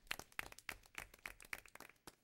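Faint applause from a small audience: a handful of people clapping, the claps thinning out near the end.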